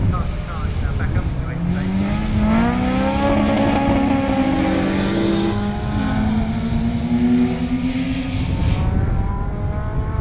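Racing touring car engines, BMW E30 3 Series among them, revving hard as the cars pass. The pitch climbs and drops back at each upshift, with a rushing hiss as they go by.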